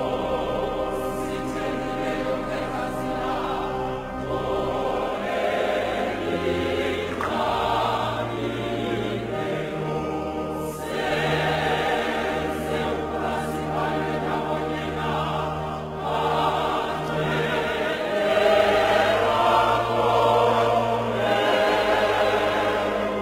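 Choir music: voices singing held chords over low bass notes that change every few seconds.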